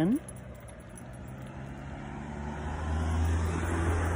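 A road vehicle approaching, its low engine hum and road noise growing steadily louder over the last two seconds.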